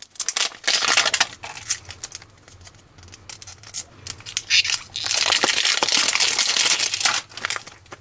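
Plastic wrapper being peeled and torn off a 5 Surprise toy ball, crinkling. There is a short spell of crinkling at the start, scattered small crackles, then a longer, denser spell past the middle.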